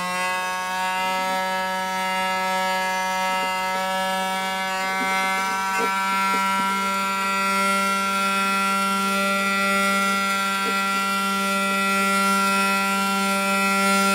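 Trompette string of an Altarwind 'Madeline' hurdy-gurdy, bowed by the cranked wheel as a steady drone. The pitch climbs slightly in the first second as the string is tightened at its tuner, then holds on a G.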